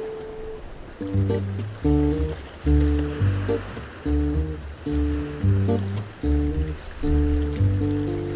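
Instrumental passage of a havanera played on acoustic guitar and plucked double bass. The bass comes in about a second in with a steady pattern of low plucked notes under the guitar.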